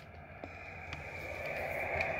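Radio receiver hiss on single sideband, cut off sharply above the voice range and growing steadily louder. There are a couple of faint clicks in the first second.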